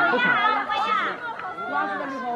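People talking: the voices of onlookers, with no other clear sound.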